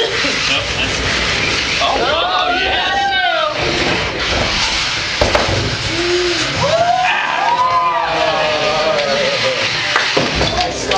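Beetleweight combat robots' electric motors whining, rising and then falling in pitch twice, over a steady din of crowd voices.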